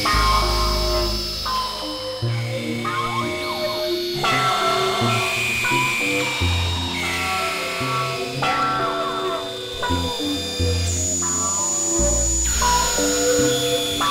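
Experimental electronic synthesizer music: layered held synth tones with a buzzy edge change abruptly every second or two over deep bass notes, with a few quick clusters of gliding pitches.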